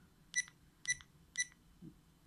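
Rollei Actioncam 425 action camera's button beep sounding three times, about half a second apart: short high beeps confirming each press as the settings menu is scrolled.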